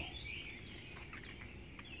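Faint, scattered bird chirps over a low background hiss.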